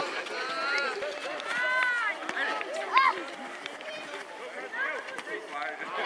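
High-pitched voices calling and shouting in short bursts across an outdoor football pitch, over a steady open-air background.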